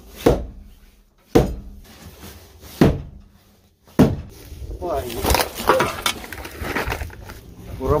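Four hard hammer blows on a wooden post, roughly a second to a second and a half apart, driving a prop in to lift a sagging shed wall. They are followed by quieter, continuous handling noise.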